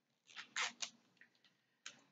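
A few short clicks and rustles of small cosmetic packaging being handled and opened: three close together, then one more near the end.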